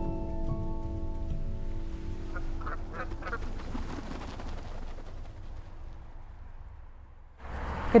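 Soft background music of held notes fading out over the first couple of seconds, then a short run of calls from a small flock of waterfowl about three seconds in, over low outdoor noise.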